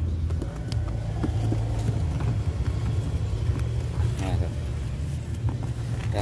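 Steady low hum of a car engine idling, with light knocks and rustling as the carpeted boot-floor board of a Honda Brio is handled and lifted.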